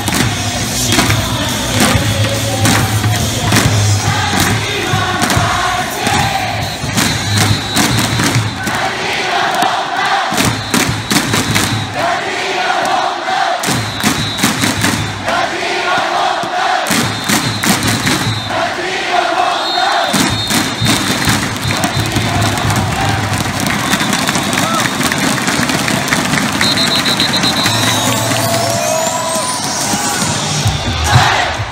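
A large baseball crowd chants a player's cheer song in unison over amplified stadium music, beating inflatable thundersticks together in time. The low beat of the music drops out a few times midway, leaving the voices and the clacking sticks.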